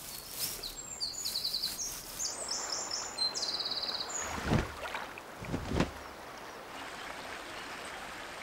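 Small birds chirping in quick high trills, then two sudden whooshes of a cormorant's wing beats as it takes off, and a steady rush of flowing stream water near the end.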